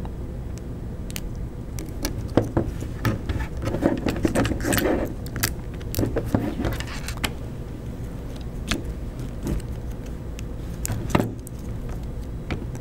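Nylon zip ties being threaded and pulled tight around steel rods and acrylic parts: irregular plastic clicks, ratchety zips and handling rattles, busiest a few seconds in.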